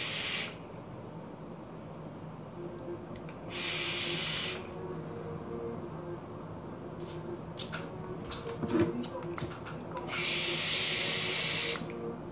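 Hissing draws on a vape and exhaled vapour: a short one at the start, another about four seconds in and a longer one near the end, with a scatter of small clicks in between as the device is handled.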